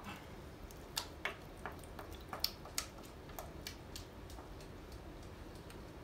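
Metal spoon scraping and tapping against a glass mixing bowl as a thick melted-cheese sauce is spooned out onto chicken in a baking dish: a scatter of light, irregular clicks that thin out after about four seconds.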